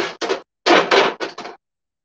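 Knocks and rattles of a Coleman camp stove's propane regulator being handled and fitted into the stove's fuel inlet, in two short spells of clatter, the second starting just over half a second in and lasting about a second.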